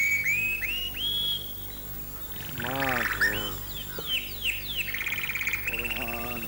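Birds calling: a run of short whistled notes that climb step by step in pitch, then other calls, chirps and a rapid trill.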